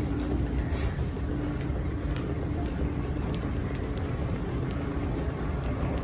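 Suitcase wheels rolling with a steady low rumble along the terminal floor, over a steady low hum, with a few faint ticks.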